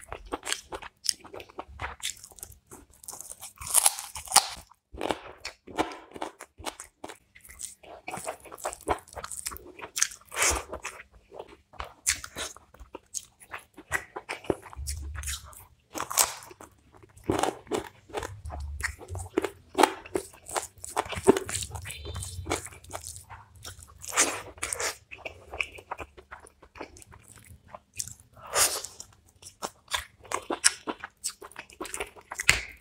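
Close-miked chewing of a man eating chicken roast and rice by hand, with crunchy bites coming at irregular intervals, several louder than the rest.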